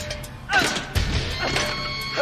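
Tense horror film score with two heavy crashing impacts, about half a second and one second in.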